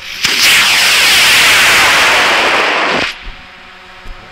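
High-power solid-fuel rocket motor lifting off and burning. A sharp crack at ignition opens a loud, steady rushing noise that lasts about three seconds and cuts off suddenly at burnout.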